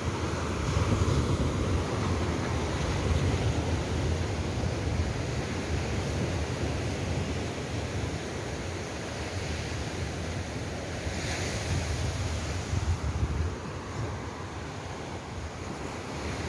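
Surf breaking on a sandy beach, a steady wash of waves, with wind buffeting the microphone.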